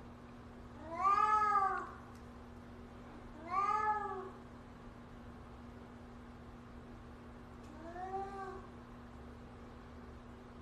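A sleeping cat meows three times in its sleep. Each meow rises and then falls in pitch, and the third, near the end, is quieter than the first two.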